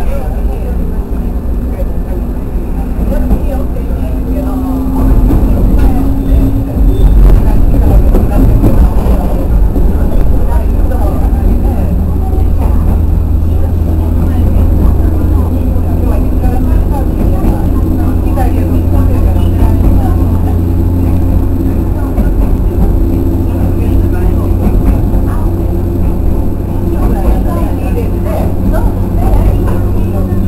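Running noise of a JR West 103 series electric train heard inside its cab: a steady low rumble that grows louder about five seconds in, with a steady hum above it.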